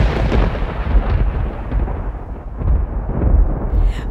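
Thunder sound effect: a long, rolling low rumble that swells a few times and slowly fades.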